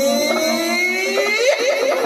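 A male singer's long held note in a Sambalpuri folk song, heard through a stage PA, sliding upward in pitch and breaking into short wavering turns about three quarters of the way in, with no drums under it.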